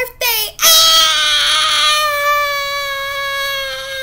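A woman's voice holding one long, loud note, starting just over half a second in after two short vocal sounds and sinking slightly in pitch as it is held.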